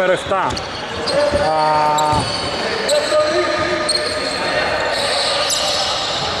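Echoing basketball-court sound in a large inflatable dome hall: players' voices with a held call about one and a half seconds in, and a few short knocks a little later.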